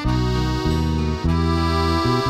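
Folk band playing without singing: accordion chords held over double bass notes that change every half second or so, with acoustic guitar.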